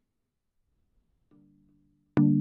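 Near silence, then about a second and a half in a faint low musical note sounds and slowly fades: the first of the Logic Pro X benchmark project's music playing back.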